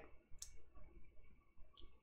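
Near silence in a small room, broken by one faint click about half a second in and a tiny tick near the end.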